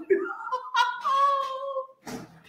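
A high, drawn-out meow-like cry that rises in pitch and then holds steady for about a second before stopping.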